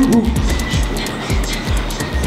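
Background music with a steady fast beat, low kick pulses about three times a second and ticking cymbals over them.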